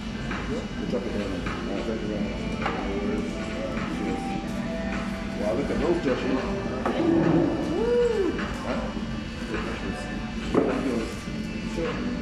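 Restaurant background: music playing, with indistinct voices.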